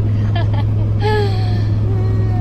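Steady low drone of a moving vehicle heard from inside the cabin, with a short voice sound about a second in.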